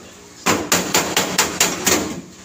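A hammer striking the sheet-metal body panel at the rear wheel arch of a Mitsubishi L300 van: a quick run of about seven sharp blows, starting about half a second in.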